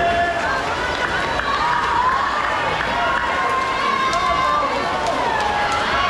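Crowd of swimmers on a pool deck yelling and cheering for racers, many overlapping voices with long held shouts, steady throughout.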